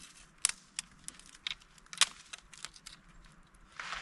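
Small dry twigs snapped by hand as kindling for a campfire: a series of sharp, irregular cracks, the loudest about half a second and two seconds in.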